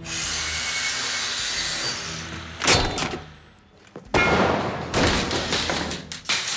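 Angle grinder cutting metal, a steady grinding whine for about two and a half seconds. A sudden loud hit comes near three seconds, and another long rush of noise follows from about four seconds in.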